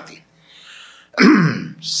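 A man clears his throat once, about a second in, in a pause between sentences of speech.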